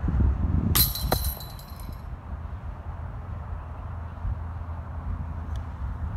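A thrown disc strikes the chains of a metal disc golf basket about a second in, setting off a bright jangling ring that fades over about a second. Wind rumbles on the microphone throughout.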